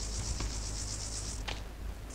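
An insect's high, rapidly pulsing trill that stops about a second and a half in, with a faint click as it stops.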